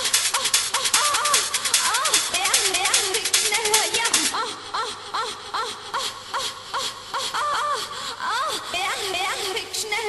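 Electronic dance remix: a dance beat under a looped vocal sample of a voice moaning. The beat cuts out about four seconds in, leaving the moaning voice alone, more quietly.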